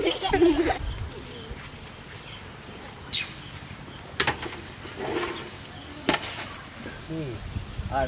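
Children's voices in brief bits of chatter, with a few sharp clicks in between over a steady outdoor background.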